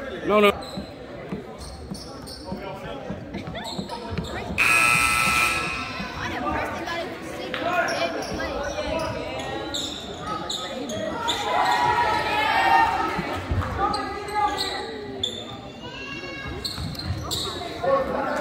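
Basketball game in a gym: a ball bouncing on the hardwood court, with crowd and player voices echoing around the hall. About five seconds in comes a referee's whistle blast lasting about a second, which stops play for a foul before free throws.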